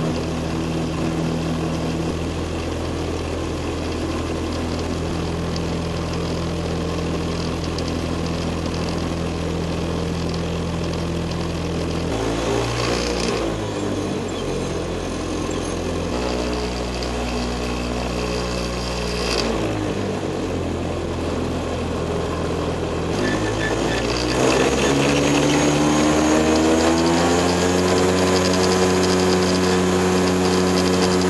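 Earthstar Thunder Gull JT2 ultralight's engine running at low power while taxiing, its pitch stepping up and down several times. About 24 seconds in the throttle comes up and the engine note rises and grows louder.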